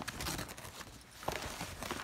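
Tear-away embroidery stabilizer being torn off the back of machine-embroidered denim: paper-like rustling with a few sharp tearing crackles.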